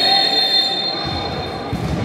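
A referee's whistle blown in one long, steady blast lasting a little under two seconds.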